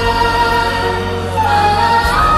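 Music: a choir of voices holding long sustained notes over a steady low bass, the melody dipping and rising again near the end.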